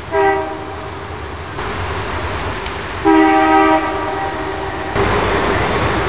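Diesel freight locomotive's air horn sounding a chord twice: a short blast at the start, then a longer, louder one about three seconds in. A rumble from the approaching locomotives steps up near the end.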